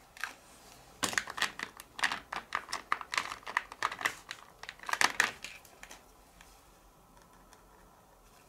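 Yellow Posca paint marker being shaken, its mixing ball rattling in fast clicks in several spurts for about five seconds, the usual shaking that mixes the paint before use.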